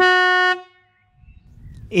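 A 12-volt single trumpet horn on a narrowboat's bow gives one loud blast of about half a second. It holds a single steady note and ends with a brief ringing tail.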